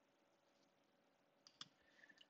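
Near silence, broken by a couple of faint, short computer mouse clicks about one and a half seconds in.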